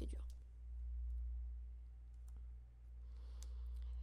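Pause in a lecture recording: a steady low hum runs throughout, with a few faint clicks and a soft breath near the end.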